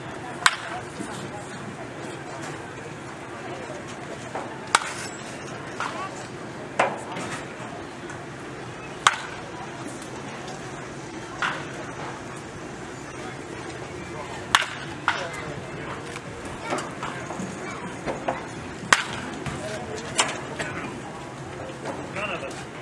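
Baseball bat striking pitched balls in batting practice: sharp cracks every four to five seconds, with fainter hits in between, over steady background chatter.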